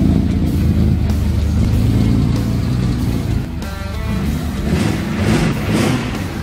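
Nissan Skyline C10 GT-R engine running with a loud, deep rumble that starts suddenly, mixed with background rock music with guitar.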